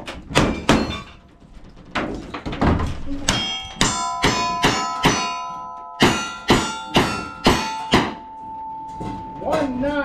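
A rapid string of gunshots, about two a second through the middle, each followed by the ringing of hit steel targets. The ring lingers briefly after the last shot.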